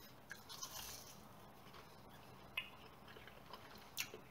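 Faint bite into a piece of battered, deep-fried hogs pudding, then quiet chewing with a few soft mouth clicks.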